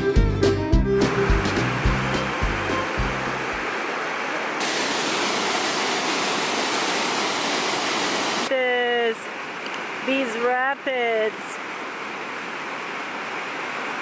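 Steady rushing of a waterfall's white-water rapids pouring over rocks. Background fiddle music fades out in the first few seconds. The rush drops in level a little past the middle, where a few brief voice sounds come through.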